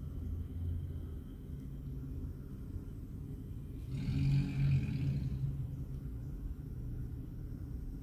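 Low, steady background rumble, with a louder swell about four seconds in that lasts a little over a second and carries some higher hiss.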